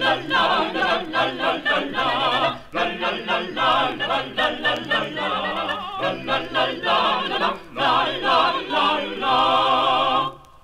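Several voices singing together without instruments, with a wavering vibrato, in sung phrases with short breaks between them.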